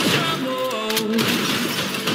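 A sudden smashing crash at the start, with another sharp hit about a second in, over the trailer's dramatic music: an action-film sound effect.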